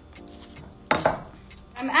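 A stone pestle knocks once, sharply, in a stone mortar about a second in while fried plantains and garlic are being mashed. Faint lighter taps come around it, with quiet background music under them.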